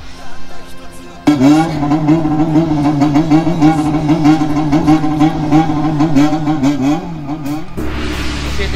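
A Honda CBX400F inline-four's bōsōzoku-style 'call' played through a portable speaker: the engine revved in a rhythmic pattern, its pitch rising and falling again and again. It starts abruptly about a second in and stops shortly before the end.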